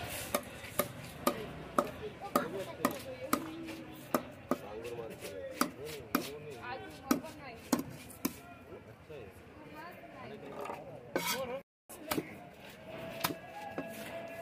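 A broad fish cleaver chopping into a wallago catfish on a wooden chopping block. The sharp chops come about twice a second for the first eight seconds or so, then thin out.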